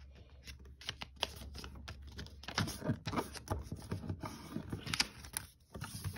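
A sheet of paper being folded and creased by hand on a wooden tabletop: irregular rustling and crinkling with many small ticks and taps.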